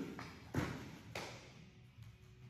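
A few light thumps and taps, the clearest about half a second and a second in, as people push up off a hard floor onto their feet.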